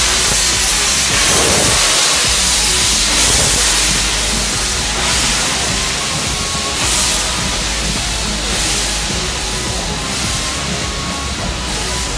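LMS Stanier Black Five 4-6-0 steam locomotive blowing out a loud rush of steam as it moves off, strongest for the first few seconds and then easing slightly.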